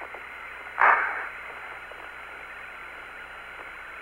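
Steady radio static on the Apollo 17 lunar-surface voice link, with one short burst of noise about a second in. The signal is dropping out because the astronauts are behind a boulder, out of line of sight of the relay.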